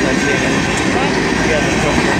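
Freight train coal cars rolling past at close range: a loud, steady noise of steel wheels running on the rails.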